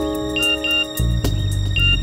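A mobile phone ringing in short double beeps that repeat about every second and a half, over a dramatic background score with a low pulsing drone.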